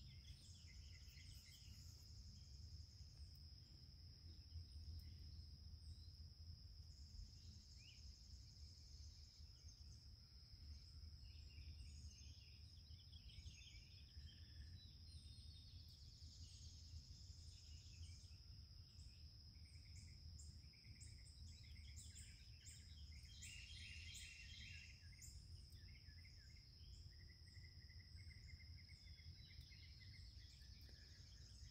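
Faint garden ambience: a steady high-pitched insect drone with scattered bird chirps over a low background rumble.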